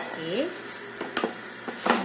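A few light clicks and knocks from handling an aluminium tortilla press and its plastic liner while a pressed masa disc is lifted out, one about a second in and another near the end.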